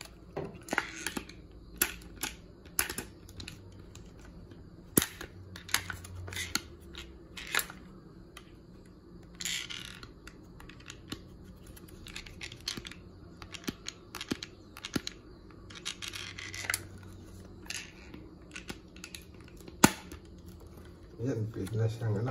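Plastic mouse trap being handled and worked on: irregular hard plastic clicks and taps as its parts are fitted, with a couple of brief scraping sounds. The sharpest click comes near the end.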